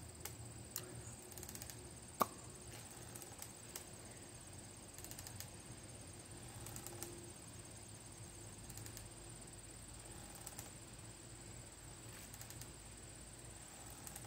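Faint outdoor background with scattered light clicks and one sharper click about two seconds in.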